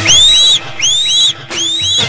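Three whistle-like swoops, each rising then falling in pitch and trailed by a fainter echo, about 0.7 s apart, over the low bass pulse of a DJ remix.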